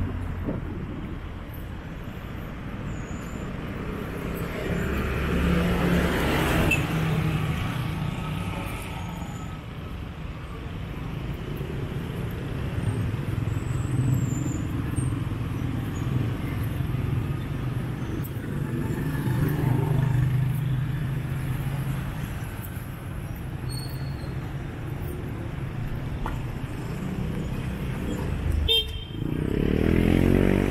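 Street traffic: motorcycles, motor tricycles and cars running past, swelling as each one passes, with a short horn toot.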